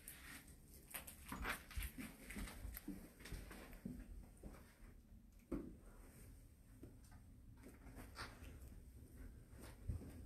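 Faint footsteps climbing a debris-strewn staircase: irregular soft thuds and scuffs, with a sharper knock about five and a half seconds in.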